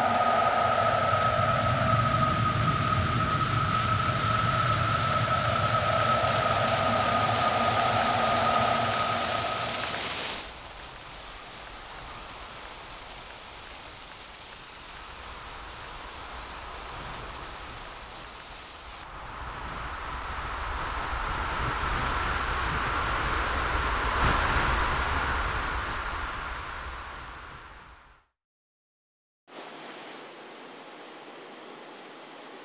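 Steady hissing noise with a held high tone. About ten seconds in it drops suddenly to a softer hiss, then swells again and fades to silence shortly before the end.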